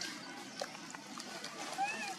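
A macaque gives one short squeak near the end that rises and then falls in pitch, over a low background murmur of voices and a few small clicks.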